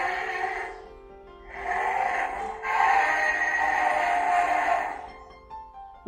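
Electronic Godzilla roar from the Playmates 13-inch Godzilla figure's built-in sound chip, played through its small speaker, thin and not very clear. It comes in three stretches, the last and longest lasting about two and a half seconds.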